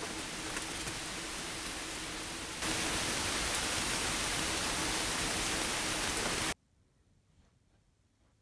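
Steady rain falling outdoors, an even hiss; it gets louder about two and a half seconds in and cuts off suddenly after about six and a half seconds.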